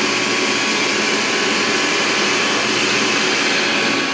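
Fadal 4020 CNC vertical mill cutting titanium with an end mill at 1200 RPM: a steady, even whir and hiss with a faint high whine. The cut runs smoothly, without chatter.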